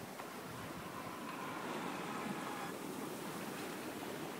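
Steady wash of water rushing along the hull of an Alberg 37 sailboat under sail.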